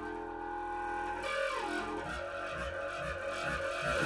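A long low-pitched wind instrument with a saxophone-style mouthpiece, played live: a held low drone rich in overtones that bends in pitch about a second and a half in, then breaks into low pulsing notes about twice a second.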